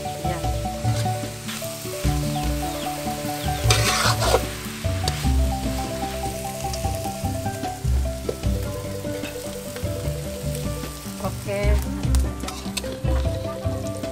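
Bia (mangrove snails) and kedondong leaves sizzling as they are stir-fried in a wok, with a louder burst of sizzling about four seconds in. Background music with a melody and a bass line plays over it.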